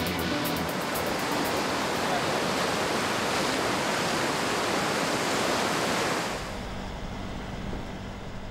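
River water splashing and rushing as rafters throw it about with their hands. The water noise stops about six seconds in, leaving a quieter low rumble.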